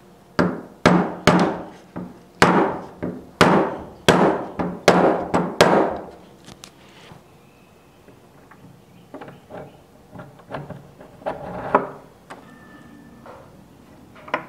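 Small mallet tapping the metal rosette plate of an antique door knob set into a wooden door, about a dozen sharp, ringing taps over the first six seconds. Quieter clicks and knocks follow as a porcelain knob is fitted onto its spindle.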